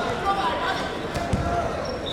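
Indistinct chatter of many people echoing in a gym hall, with one dull low thud about a second and a half in.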